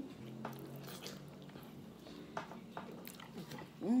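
A person chewing a mouthful of food, quietly, with a few soft wet mouth clicks, ending in a hummed "hmm" right at the end.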